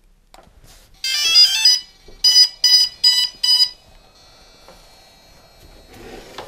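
DJI Phantom 2 Vision quadcopter's power-on chime: a short run of electronic tones about a second in, then four evenly spaced beeps. The sequence signals that the aircraft has powered up.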